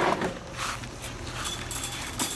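A plastic kennel sliding into a folding wire dog crate: a scrape at the start that fades, then a few light rattles and clicks of the wire and plastic.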